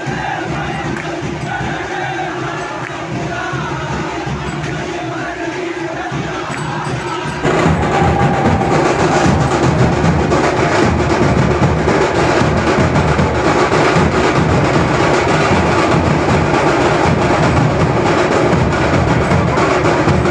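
A group of men's voices chanting together, then, after a sudden cut about seven seconds in, loud continuous beating of large dhol drums amid the crowd.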